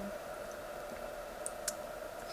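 A pause between sentences with a steady faint room hum and two short faint clicks about a second and a half in.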